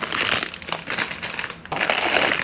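Plastic grocery packaging crinkling and rustling as it is handled, heard as a run of quick crackles.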